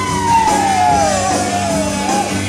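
Live rock band playing, with one long held note sliding slowly down in pitch over the band.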